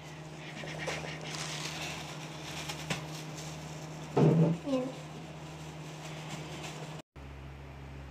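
Faint rustling of clear plastic food-prep gloves being rubbed and handled, over a steady low electrical hum. A brief voice sound comes about four seconds in, and the sound cuts out for an instant near the end.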